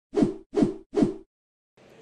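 Intro sound effect: three identical short whoosh-thump hits about 0.4 seconds apart, each with a pitch that drops as it fades.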